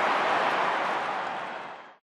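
Steady stadium crowd noise, a broad hubbub with no clear voices, fading out over the last half second.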